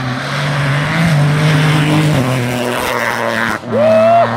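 Rally car engine running hard on a stage road. Its note steps up about a second in, then falls away at about two seconds as the driver changes gear or lifts. The sound cuts off abruptly near the end and another engine comes in.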